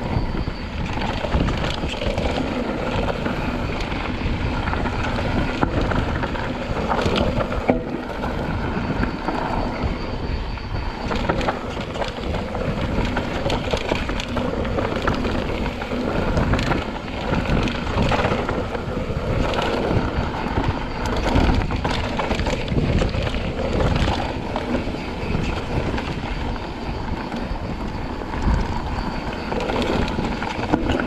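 Mountain bike riding fast down a rocky dirt singletrack: steady tyre noise on the dirt with frequent knocks and rattles from the bike over rocks and roots, and wind buffeting the camera microphone.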